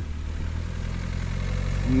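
Small panel van's engine running at low speed as the van drives slowly up, a steady low rumble growing slightly louder.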